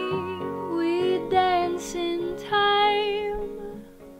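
A woman singing a slow pop melody in long, held notes over soft instrumental backing; the singing fades out near the end.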